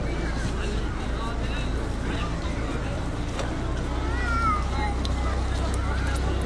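Open-air crowd ambience: indistinct voices of people nearby, with one voice standing out briefly about four seconds in, over a steady low rumble.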